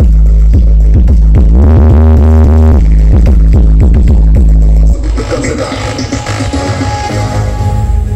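Electronic dance music played extremely loud through a giant stacked sound-horeg loudspeaker rig (Tanpa Batas Audio), with heavy bass pushed to the limit. About five seconds in, the level drops suddenly and the bass thins, leaving a noisier, lighter sound.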